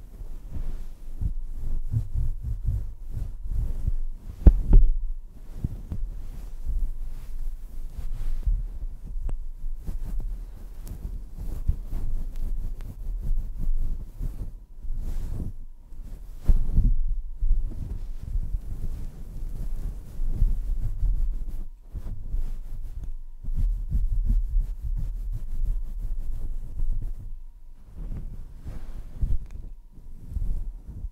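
Fingertips and a flat gua sha-style massage tool rubbing and scratching a furry microphone cover, giving an uneven, deep, muffled rumble with soft scratching clicks. A sharper knock comes about four and a half seconds in.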